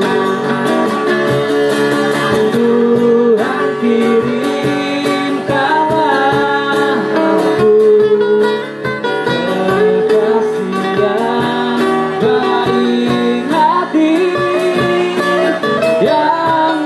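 Live acoustic band music: acoustic guitars strumming chords, with a singing voice and a violin playing melody lines over them.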